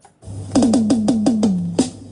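A programmed drum beat starts about a quarter second in: a quick run of about six electronic tom hits, each dropping in pitch, the last one held longer, over a steady bass note.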